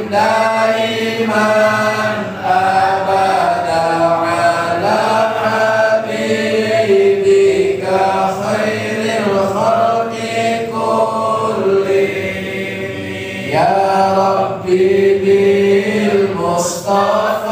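A group of male voices, men and boys, chanting an Islamic devotional chant together in unison, in long held melodic lines that glide slowly between notes with brief breaths between phrases.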